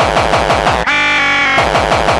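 Breakcore/gabber electronic music: a rapid stream of distorted kick drums, each dropping in pitch. About a second in, the kicks break off for a held, buzzing synth chord lasting under a second, then pick up again.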